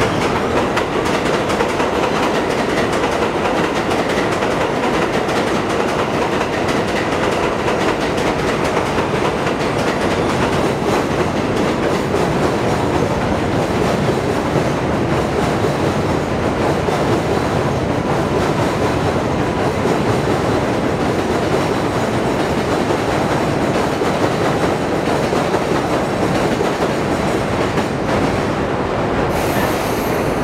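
Subway train running along a steel elevated structure: a steady, continuous rumble of wheels on rail that holds the same level throughout, with a faint steady whine above it.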